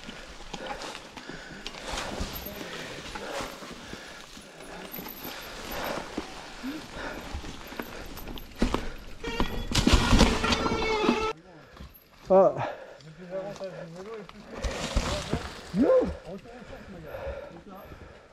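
Mountain bike ridden over dry leaf litter and rock on a forest trail: tyres rolling through the leaves with the bike rattling and clicking over bumps, loudest about nine to eleven seconds in. The riding noise cuts off suddenly about eleven seconds in, leaving a quieter stretch.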